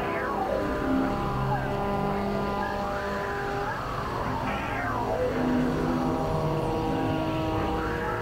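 Experimental electronic synthesizer drones played on a keyboard synth: several held tones layered at different pitches, with pitch sweeps gliding down and up every few seconds.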